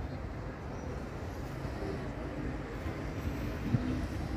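Steady low rumble of outdoor background noise, with no distinct event standing out.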